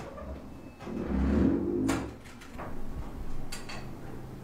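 An apartment front door being opened and then shut, with a low rumbling stretch ending in a knock about two seconds in, followed by a few light clicks.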